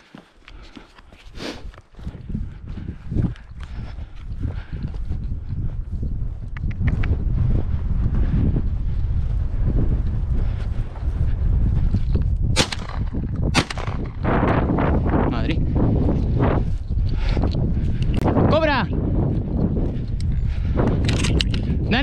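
Wind buffeting the microphone with a heavy low rumble, and two sharp shotgun shots about a second apart around the middle.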